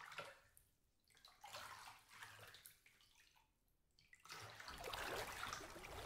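Shallow water splashing and sloshing quietly as a child wades and sweeps a hand net through it. It comes in three bursts, the longest from about four seconds in.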